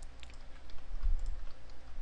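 A few faint, scattered clicks from a computer mouse and keyboard over a low steady hum.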